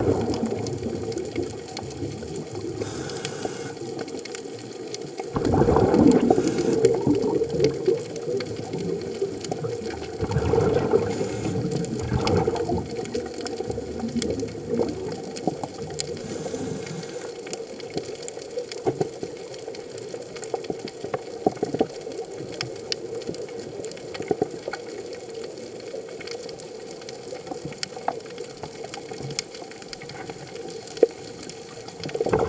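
Underwater sound of a scuba diver's breathing: the regulator exhaust sends out bubbling gushes of air, in two long bursts in the first half. A quieter steady underwater hiss with faint scattered clicks follows.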